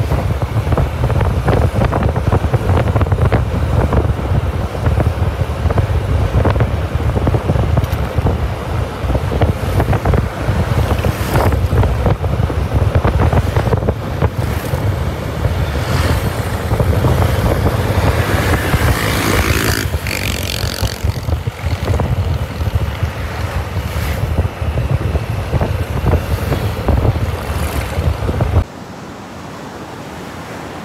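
Loud wind buffeting on the microphone of a motor scooter moving at road speed, with the scooter's road and engine noise under it. Near the end it cuts to quieter, steady surf breaking on a beach.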